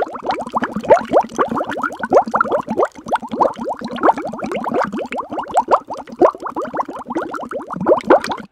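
Voices from a two-man podcast played back fast-forwarded: a dense, continuous chatter of short, quick pitch glides with no words to be made out.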